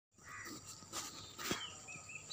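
Evening outdoor ambience: a steady high insect trill, with two brief knocks about one and one and a half seconds in and a few short bird chirps near the end.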